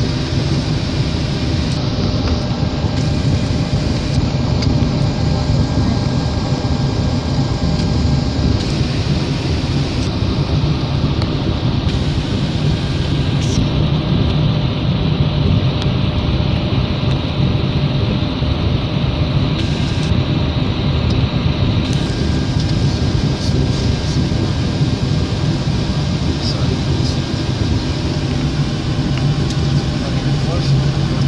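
Steady jet-engine and airflow noise heard from inside a Boeing 737 airliner, with a constant low hum underneath.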